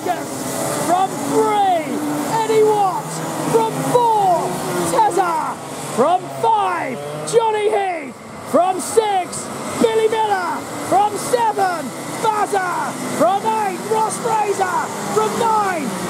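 A pack of racing karts running around the circuit at pace before the start, many engine notes overlapping and rising and falling in pitch as the karts pass. A commentator's voice runs over them.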